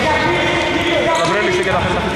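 Basketball game sounds on a wooden indoor court: sneakers squeaking and a ball bouncing as players run the floor, with voices in the echoing hall.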